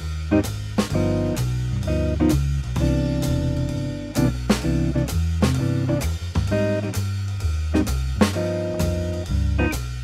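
Jazz guitar comping on an archtop electric guitar: short, rhythmic maj7 and dominant chord stabs with added extensions such as the ninth and thirteenth, over a backing of walking bass and drums.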